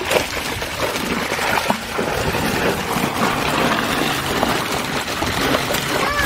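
Water rushing and splashing steadily as a fishpond is drained through its outflow channel, churning around a net held in the current to catch milkfish.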